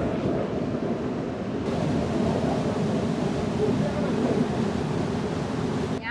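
The Rhine Falls' waterfall rushing, a steady loud roar of falling water, with wind buffeting the microphone.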